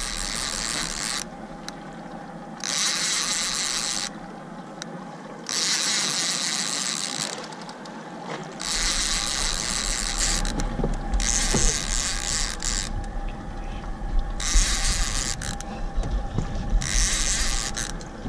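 Fishing reel's ratchet mechanism whirring in repeated bursts of one to two seconds with short pauses, as a fish is played up to the boat.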